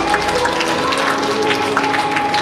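Audience clapping, a dense irregular patter, over background music with held notes.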